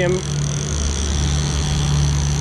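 Twin outboard motors running steadily with the boat under way, a low, even drone.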